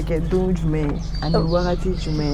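A woman speaking, with a short high thin chirp from a bird in the background a little past the middle.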